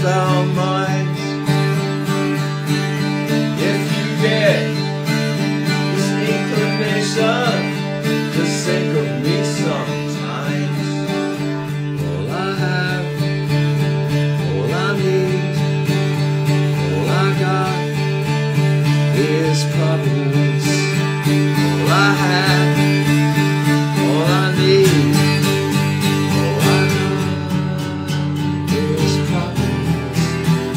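Acoustic guitar played through a song passage without words, with a low note held underneath nearly throughout and rising pitched notes every second or two.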